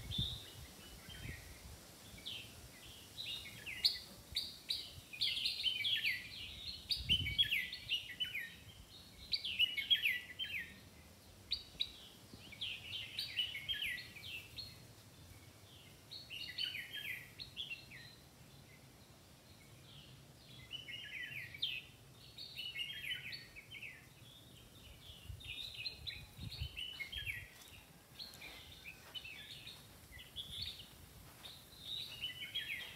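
Songbirds chirping in the trees: clusters of quick, high chirps and trills that come and go every few seconds, with a brief lull in the middle.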